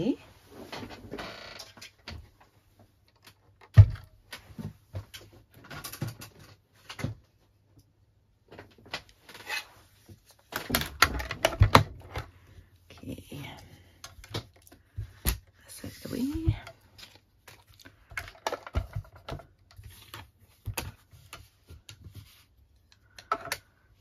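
Plastic knocks and clicks from a mini manual die-cutting machine being set down and its folding platform flaps opened out, with one loud knock about four seconds in.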